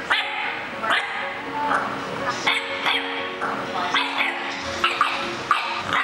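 English bulldog puppy barking and yipping in a run of short barks, about two a second, over background music.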